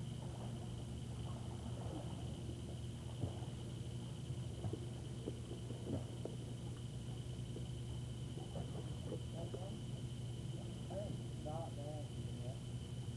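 Old camcorder videotape soundtrack: a steady low hum and a thin, constant high whine, with faint distant voices that come and go, more of them near the end.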